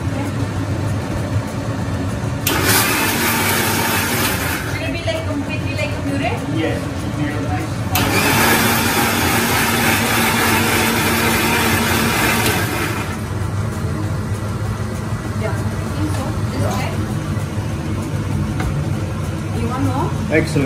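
Electric mixer grinder with a steel jar blending sautéed mushrooms and cream into a puree. It runs in two bursts, one of about two seconds starting a couple of seconds in and a longer one of about five seconds starting about eight seconds in. A steady low hum sits beneath throughout.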